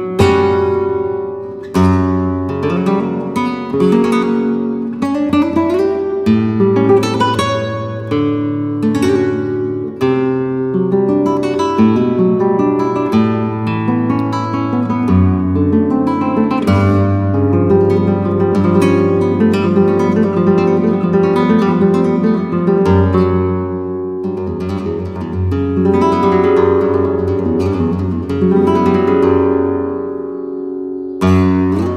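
A solo flamenco guitar plays a taranta. Fingerpicked melody notes run over ringing bass notes, broken now and then by strummed chords.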